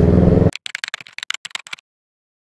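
Kawasaki Ninja 650 parallel-twin engine running steadily, then cut off abruptly about half a second in. About a second of scattered, sharp crackling clicks follows: the recording glitching as the GoPro freezes. Then silence.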